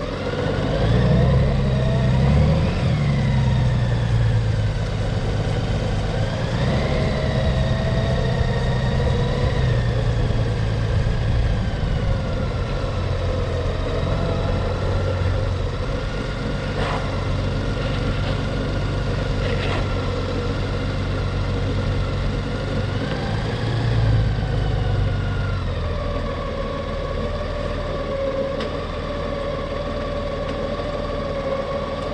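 Motorcycle engine pulling away and accelerating, its pitch climbing and dropping twice as it goes up through the gears. It then runs steadily, eases off and settles to idle near the end.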